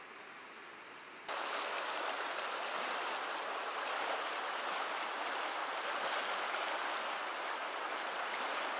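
Steady rush of a river's flowing water. It starts fainter, then turns abruptly louder about a second in and holds steady.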